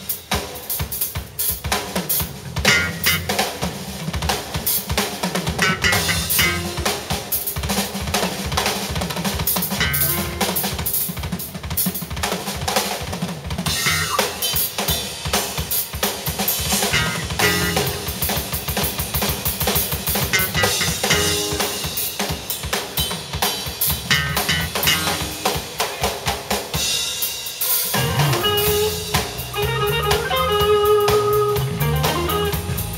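Drum kit played live in a busy drum-led stretch of kick drum, snare and rimshots. An electric guitar comes back in near the end.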